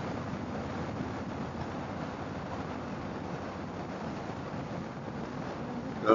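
Steady road noise of a Harley-Davidson motorcycle under way: wind rushing over the microphone, with the V-twin engine running underneath at an even pace.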